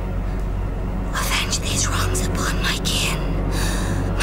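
A woman whispering in short, breathy bursts over a low, steady drone of score music.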